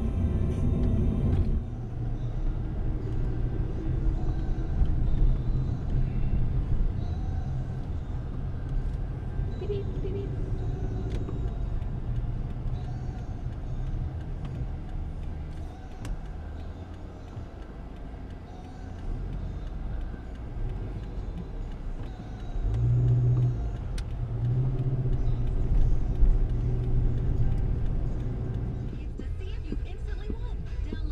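Engine and road noise heard inside a moving car, with a car radio playing speech and music underneath.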